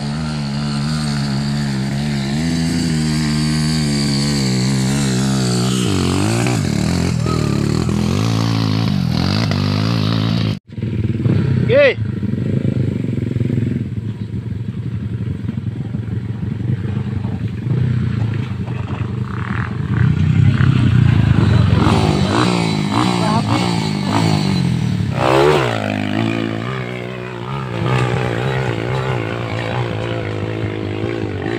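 Underbone motorcycle engine revving hard under load, its pitch rising and falling with the throttle as it climbs a steep dirt hill. The sound cuts off abruptly about ten seconds in and resumes with another climb.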